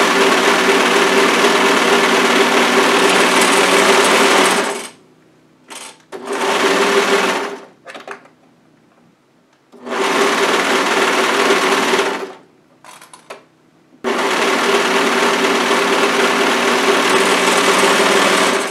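Brother overlocker (serger) stitching a knit side seam and underarm sleeve seam in one continuous line. It runs at a steady speed in four stretches with short stops between them.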